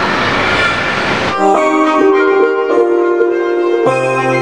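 A dense rushing noise for about the first second, then an abrupt switch to sustained synthesizer chords, held notes that change every second or so.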